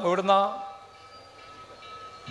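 A man speaking through a public-address system, his voice stopping about half a second in, followed by a pause in which a faint steady tone lingers.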